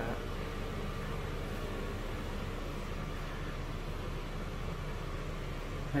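Broan Invent series bathroom exhaust fan with a squirrel-cage blower running steadily: an even rush of air over a low, steady hum.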